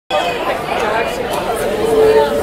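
Audience chatter: many voices talking over one another in a large hall.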